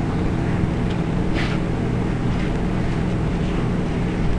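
Steady low background hum with a faint brief hiss about one and a half seconds in.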